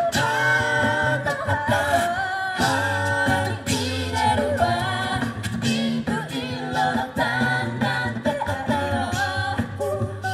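A mixed-voice a cappella group singing through microphones and loudspeakers: a melody line over sustained harmony parts and a low bass voice, with short percussive clicks keeping a steady beat.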